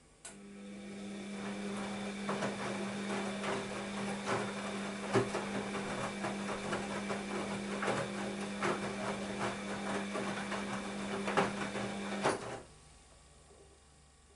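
Bosch WAB28220 front-loading washing machine turning its drum during the wash. The motor starts just after the beginning with a steady hum while wet laundry tumbles with irregular knocks, and after about twelve seconds the drum stops suddenly.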